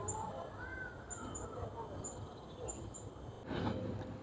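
Quiet outdoor garden ambience: faint distant voices, with short high-pitched chirps repeating irregularly, about seven in all.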